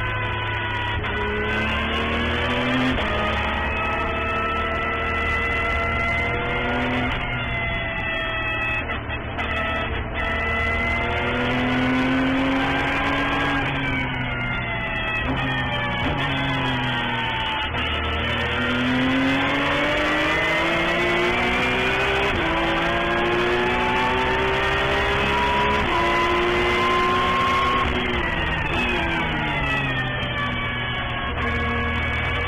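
Porsche 911 GT3 Cup race car's flat-six engine heard from inside the cockpit, pulling up through the gears with sudden drops in pitch at each upshift. It winds down steadily under braking around the middle, then climbs again in one long pull.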